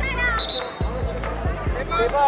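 A short, high referee's whistle blast about half a second in, over young girls' voices and irregular dull thumps.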